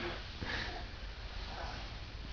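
Faint sniffing breaths, a short one about half a second in and another near the end, over a low steady hum.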